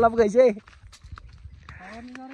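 A man's speech that stops about half a second in. Near the end a long drawn-out call begins, held at one steady pitch.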